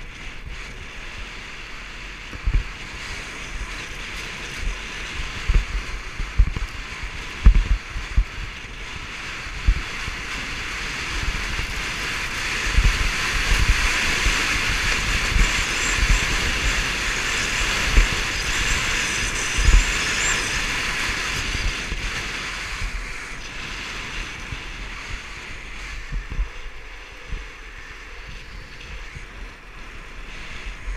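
Wind buffeting the microphone in irregular low thumps over a steady hiss, which swells for several seconds in the middle.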